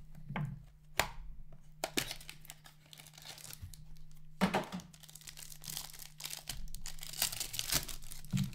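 A cardboard hockey card box being handled and opened and a card pack pulled out, then the pack's plastic wrapper torn open and crinkled by hand. This comes as a run of irregular tearing and rustling sounds with sharp cracks, loudest near the end.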